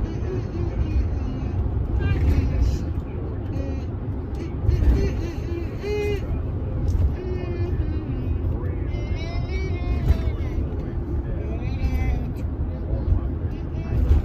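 Steady low road and engine rumble inside the cabin of an SUV driving at highway speed, with voices or singing over it at times.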